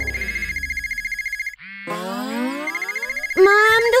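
Smartphone ringing with an incoming call: a high, fast-trilling electronic ring, much too loud. About a second and a half in it breaks off briefly for a rising sliding tone, then the ring resumes.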